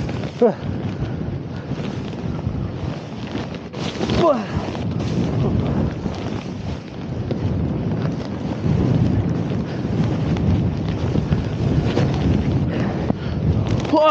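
Wind rushing and buffeting on the microphone of a camera carried by a snowboarder riding through deep powder, mixed with the board's hiss through the snow. The rush is steady throughout, with brief short whoops from a rider twice near the start.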